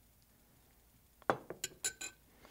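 Near silence, then about four short clinks of a metal spoon against a glass bowl and plate, starting a little over a second in.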